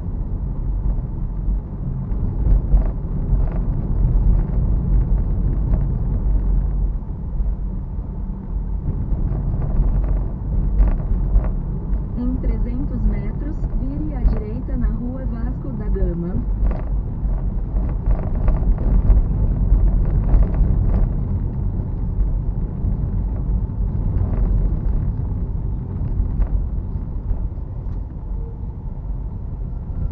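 Car driving on a city road heard from inside the cabin: a steady low rumble of engine and tyres, with scattered knocks and rattles. A short indistinct voice comes in near the middle.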